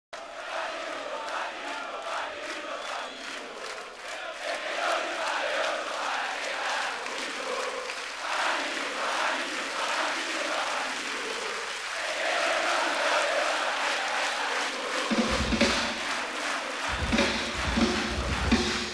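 A live concert crowd chanting together. About fifteen seconds in, loud low hits from the band come in under the chant, and more follow near the end.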